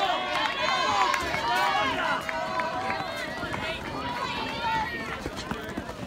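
Several spectators yelling at once, voices overlapping and rising in pitch, as sprinters race past. The quick footfalls of the runners on the track sound through the voices.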